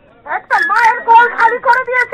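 A woman speaking into a handheld microphone in a raised, strained voice, in short loud phrases with brief gaps.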